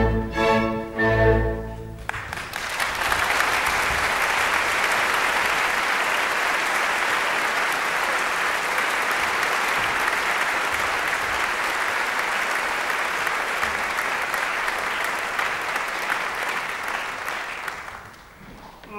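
An opera orchestra's closing bars end about two seconds in, followed by a theatre audience applauding steadily for about fifteen seconds, fading near the end.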